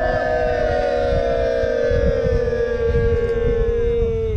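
A group of people yelling one long, held cheer together, several voices overlapping, the pitch slowly sinking.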